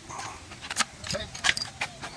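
Metal hoist hardware clinking and rattling as it is handled, with several sharp metallic clicks, the loudest about a second and a half in.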